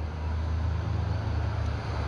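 A pickup truck driving past on the road alongside, a steady low engine and tyre rumble.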